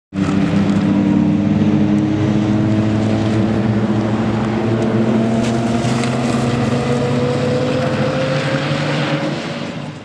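Mazda RX-8's rotary engine running under power as the car drives along, its note climbing slowly and fading away near the end.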